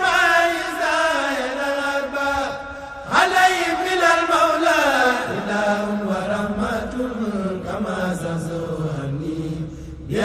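Chanting of an Arabic religious poem (a Mouride xassida) in long, drawn-out melismatic phrases; a new phrase begins about three seconds in, each one gliding down in pitch before settling on long held lower notes.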